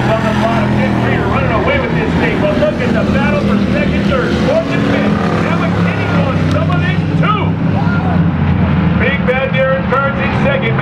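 Race car engines running at speed on the track, a steady drone that holds through the whole stretch.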